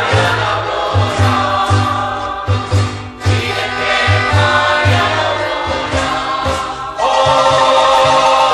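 Church choir singing a Spanish-language Catholic mass hymn, accompanied by marimba playing a steady beat of low notes. A louder, fuller phrase comes in about seven seconds in.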